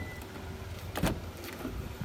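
An SUV's rear door latch clicks once about halfway through as the door is opened, over a low steady rumble.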